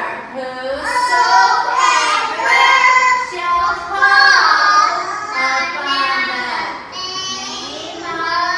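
Young children singing a song together with a woman's voice leading them.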